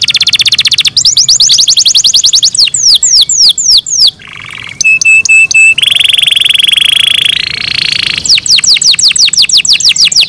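Domestic canary singing a continuous, loud song: rapid rolled trills, a run of slower down-slurred notes, a short break about four seconds in, a long held buzzy note that steps up in pitch near seven seconds, then quick down-slurred notes again.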